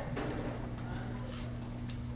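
Room tone: a steady low hum with a few faint clicks and knocks.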